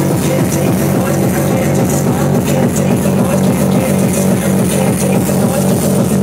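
Loud hardcore electronic dance music (gabber/frenchcore) played over a club sound system, with a heavy bass beat pounding at a fast, even pace.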